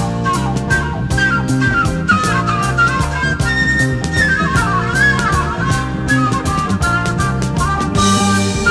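Early-1970s progressive rock band playing an instrumental passage: a flute runs quick melodic lines over bass, guitar and drum kit.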